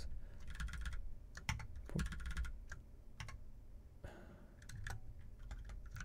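Typing on a computer keyboard: bursts of quick keystrokes broken by short pauses and single key presses.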